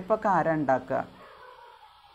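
A woman's voice for about the first second, drawn out with a rising pitch, then only faint room tone.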